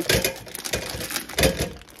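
Plastic sausage packaging crinkling as chicken apple sausages are tipped out of it, with two dull thumps of sausages dropping into an air fryer basket: one just after the start and a louder one about one and a half seconds in.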